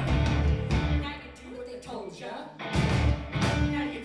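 Live rock band with electric guitar, bass and drums playing loud, breaking off about a second in. A voice is heard over the quieter gap, then the band comes back in loud near the end.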